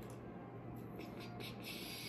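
Faint music playing in the background with a steady low hum, and soft scraping and rustling in the second half as pepper seeds are worked out by hand.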